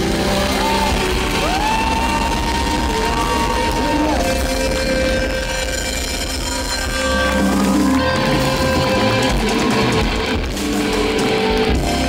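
Live rock band led by electric guitar, playing long sustained notes bent upward in pitch over bass guitar and drums.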